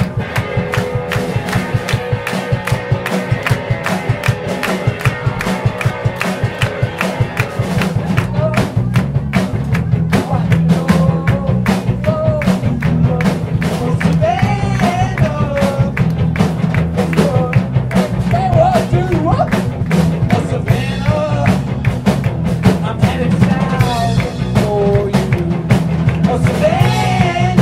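Live rock band playing: drum kit and electric guitars, growing louder about eight seconds in, with a sliding high melody line over the top.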